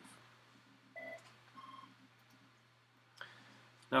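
Two short, quiet electronic beeps about a second in, the second higher in pitch, over a low steady hum.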